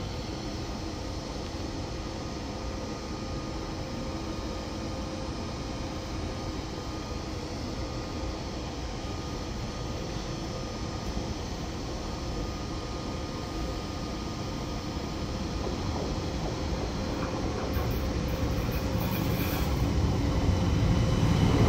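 Steady rumble and hum of railway station ambience with two faint held tones from the Railjet standing at the platform, while an ÖBB class 1142 electric locomotive and its express train approach, their low rumble growing louder over the last few seconds.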